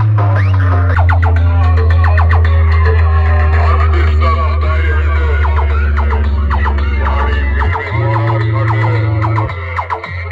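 Loud electronic DJ music played through a roadshow sound system of stacked horn loudspeakers driven by amplifier racks, with very strong held bass notes that change pitch near the end.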